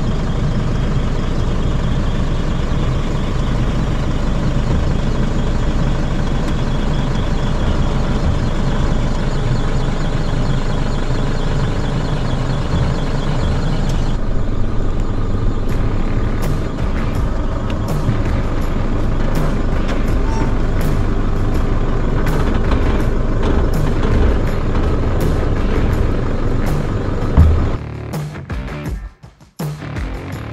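Isuzu D-Max ute's turbo-diesel engine running steadily as it reverses slowly up to a caravan's hitch, with music playing over it.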